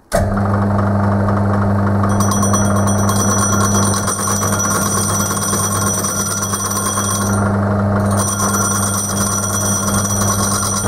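Metal lathe motor humming steadily as a carbide insert tool turns the rim of a faceplate, the cut setting up a high-pitched ringing from about two seconds in that breaks off briefly near the end and returns. The sound cuts in abruptly at the start.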